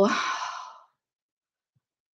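A woman's sigh: a breathy exhale that fades out within the first second.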